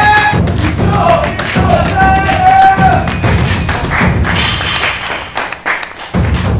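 Repeated heavy thuds from a barbell being driven hard in a gym, under loud background music. The thuds thin out toward the end as the set finishes.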